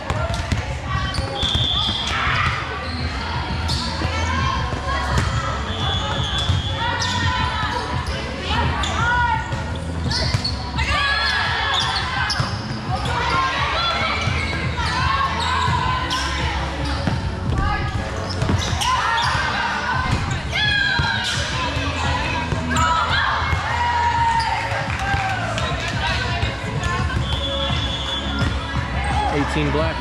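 Volleyballs being hit and bouncing on a hardwood sport court, with repeated thuds, under the chatter and calls of players' voices in a large gym.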